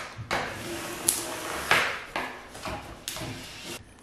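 A plastic ruler being swept over adhesive laminate film on sticker paper, making about four separate scraping strokes as the film is pressed flat and air bubbles are worked out.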